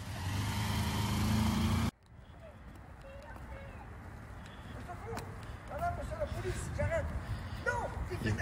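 A motor vehicle running close by with a steady hum and hiss, cut off abruptly about two seconds in. After that, quieter street sound with faint short voices.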